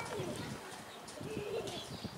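Faint bird calls from the enclosure: a couple of short, soft calls, near the start and again about a second and a half in.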